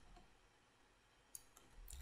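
Near silence, broken by a single short click about a second and a half in, from the computer controls in use.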